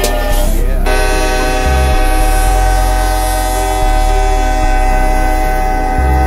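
Diesel locomotive air horn sounding one long, unbroken multi-note chord. The sound changes abruptly about a second in, likely an edit, and then holds steady.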